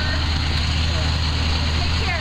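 Bus engine idling, a steady low hum.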